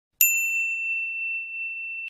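A single bright, bell-like ding: one high struck tone that rings on, slowly fading.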